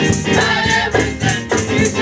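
Gospel vocal group singing in harmony over instrumental accompaniment, with percussion keeping a steady beat.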